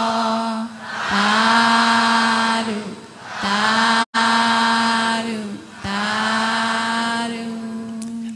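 A voice chanting a Burmese Buddhist verse of loving-kindness and merit-sharing, in long drawn-out notes held almost on one pitch. The sound cuts out for an instant about four seconds in.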